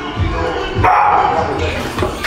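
A loud, strained shout of effort about a second in, as a 210 kg barbell back squat is driven up out of the bottom, over background music with a steady beat.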